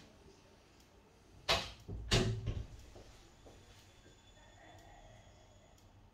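Two sudden knocks or bumps, about a second and a half and two seconds in, the second heavier and deeper, over faint room tone.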